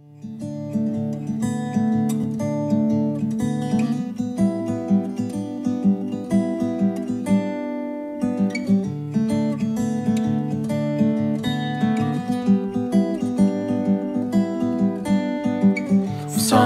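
Background music on acoustic guitar: a steady run of picked notes with a regular rhythm.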